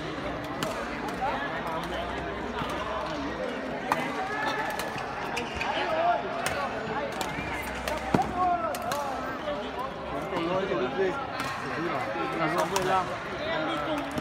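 Echoing murmur of voices in a sports hall, with a few sharp clicks of a badminton racket tapping the shuttlecock, the loudest about eight seconds in.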